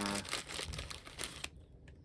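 Clear plastic zip-lock bag crinkling as it is handled and opened, with a rapid crackle that dies away about a second and a half in.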